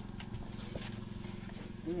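Steady low hum of running machinery, with a few faint clicks from a camper door panel being handled.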